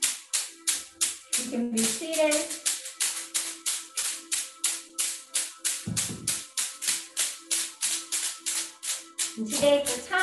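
Rapid, even tapping of a hand on the leg in a qigong self-massage, about three to four pats a second.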